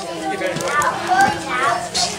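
Background talk: several children's and adults' voices chattering.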